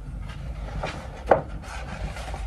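A large B1-size paper poster being flexed and rolled up by hand, its paper rustling and rubbing irregularly, with one sharper crackle a little after halfway.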